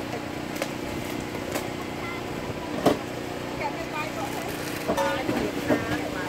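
Outdoor ambience of distant voices talking over a steady low hum. A few short knocks are heard, the sharpest about three seconds in.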